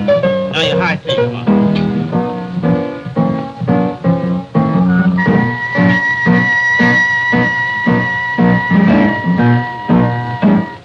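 Jazz on an upright piano, a steady pulse of chords; about five seconds in a trumpet comes in with one long held note over the piano.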